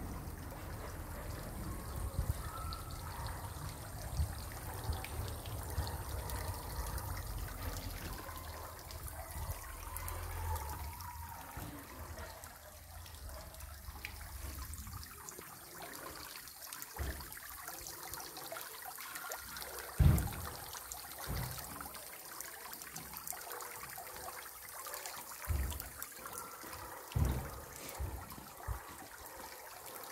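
Water from a small fountain jet splashing and trickling steadily into a basin. A few short low thumps come in the second half.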